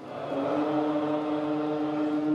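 A man's voice chanting, holding one long steady note that begins about a third of a second in after a brief pause: an imam's recitation during congregational prayer.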